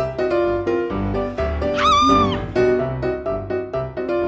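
Bouncy children's background music on a piano-like keyboard with a steady beat. About two seconds in, a short high sound effect rises and falls in pitch over the music.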